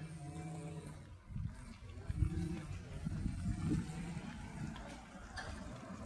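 Low, uneven outdoor rumble with no clear single source.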